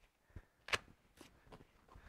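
A few faint, short clicks and rustles of boxing gloves being handled and pulled on, the sharpest a little under a second in.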